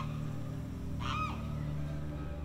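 A single short honk-like call, nasal with a rising-then-falling arc, about a second in, over a low steady drone.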